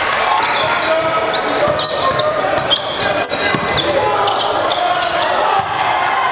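Live basketball game sound in a gym: many voices from the crowd and players, with a basketball bouncing on the court.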